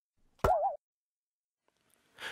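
A short cartoon sound effect about half a second in: a sharp pop that runs into a brief wobbling, boing-like tone, lasting about a third of a second.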